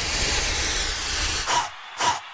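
A steady hissing noise effect in the dance routine's music track, with a low rumble under it, dying away about a second and a half in and followed by a short hit near the end.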